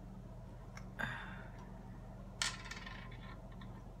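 Glass sauce bottle with a metal screw cap being handled and opened: a light click and a short scrape about a second in, then a sharp clink that rings briefly, over a steady low hum.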